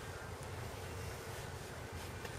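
Quiet, steady outdoor background noise: a low rumble with no distinct event.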